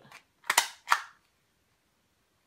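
A handheld tagging gun clicking sharply twice, about half a second and just under a second in, as its trigger is squeezed to drive a plastic tag fastener through a sock.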